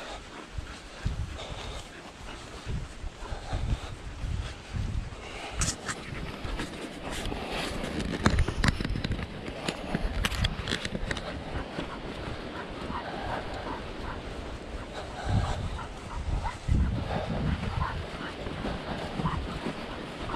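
An English springer spaniel puppy panting as it pulls hard on a bungee lead, over a steady rustle of footsteps swishing through long grass with small clicks and low thumps.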